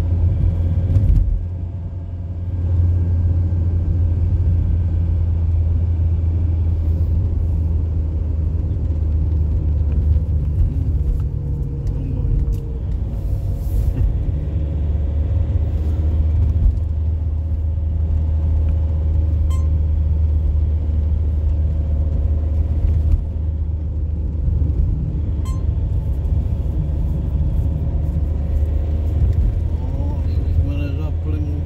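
Steady low rumble of a car driving along, engine and tyres on the asphalt, heard from inside the moving car. It eases briefly about two seconds in.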